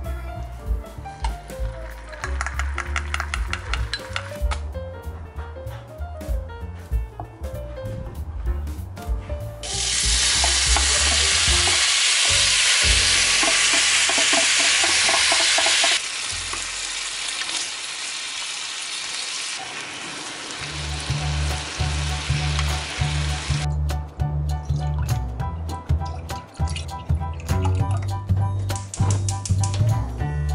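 Marinated ground meat sizzling loudly as it is stir-fried in a cast-iron pan and stirred with wooden chopsticks, for several seconds in the middle, then more softly. Background music with a steady beat plays before and after.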